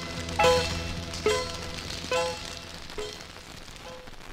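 A 1960s Louisiana swamp-pop record fading out at the end of the song: the same chord is struck a little more than once a second, each time quieter, while the bass drops away near the end. Beneath it is the faint crackle of a vinyl 45 rpm single.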